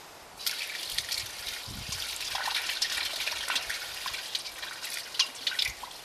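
Liquid bleach poured from a plastic jug into an open metal well casing, trickling and splashing steadily. It starts about half a second in and thins out just before the end.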